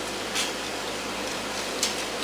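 Steady background hiss of room tone, with two brief faint soft noises, about half a second in and near the end.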